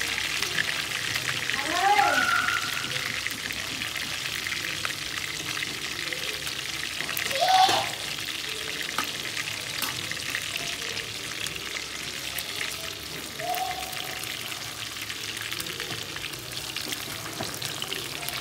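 Catfish pieces frying in hot oil in a wok, a steady sizzle. A few short pitched calls cut across it, loudest about two seconds in and again past the middle.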